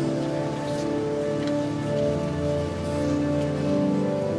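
Pipe organ playing slow, sustained notes that change about once a second.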